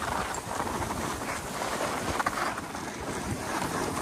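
Skis sliding and scraping over packed snow on a downhill run, with wind rushing over the phone's microphone as a steady, fluctuating noise.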